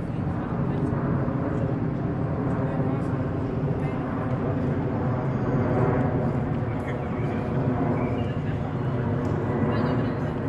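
Jet engines of a four-engined airliner flying overhead: a steady rumble with no sudden changes.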